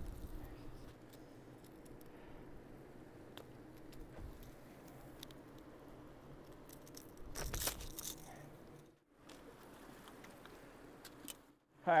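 Faint handling noise with scattered small clicks over a low background, and a short rustling burst about seven and a half seconds in. The sound drops out briefly twice, near nine seconds and again just before the end.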